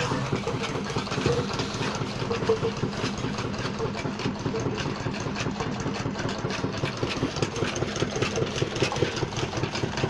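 Small generator engine running steadily with a fast, even beat, powering a rice-flaking (chura) machine.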